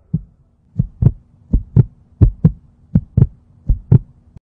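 Heartbeat sound effect: a single thump, then five lub-dub pairs of short deep thumps, about one pair every 0.7 seconds, over a faint steady hum.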